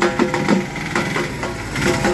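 Large hand-held frame drum beaten in a quick rhythm over a steady melodic tone. Near the end a small goods truck's engine comes in close as it passes.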